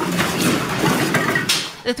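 A house shaking in an earthquake aftershock, heard through a home security camera's microphone as a harsh wash of rumbling and rattling noise that cuts off about a second and a half in.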